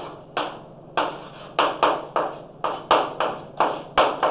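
Chalk writing on a chalkboard: about a dozen quick strokes and taps, each starting sharply and fading fast, coming closer together in the second half.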